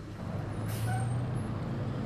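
Street traffic picked up on an outdoor reporter's microphone: a motor vehicle's engine running with a steady low hum, and a brief hiss about two-thirds of a second in.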